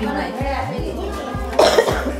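People talking over background music, with one short, loud burst of noise about a second and a half in.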